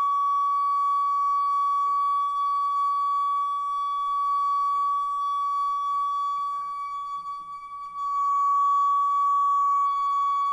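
A toilet's water supply, where water runs through a braided steel hose into the cistern, sounding one loud, steady high resonant hum with fainter overtones above it. The tone weakens and wavers about seven seconds in, then comes back at full strength.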